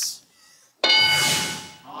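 Game-show answer board's reveal chime: a single bright ding about a second in that rings out and fades, as a hidden answer is turned over.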